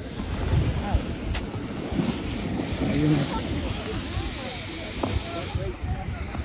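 Wind buffeting the microphone, a steady low rumble, with faint voices of people on the slope.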